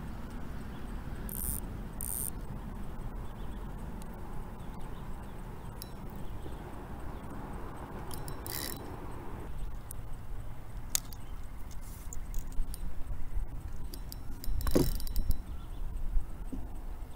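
Fishing rods and gear being handled on a kayak: scattered clicks and clatters, the loudest a second or so before the end, over a steady low rumble.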